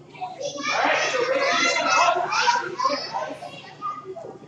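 A group of children shouting and chattering at play, many voices overlapping, loudest for the first three seconds and then dying down.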